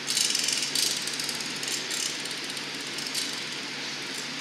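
A steel blowpipe rolling along the metal arms of a glassblowing bench: a rattling clatter of many quick clicks, busiest in the first second and recurring more lightly after, over a steady background hum.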